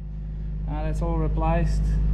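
A man talking over a steady low hum that slowly grows louder.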